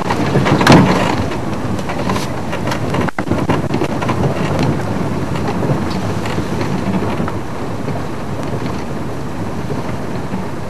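Moving game-drive vehicle: steady road and engine noise with wind buffeting the microphone, loudest about a second in.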